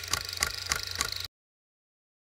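Typewriter keystroke sound effect: dry key strikes about three a second as the title is typed out, stopping abruptly about a second in, followed by dead silence.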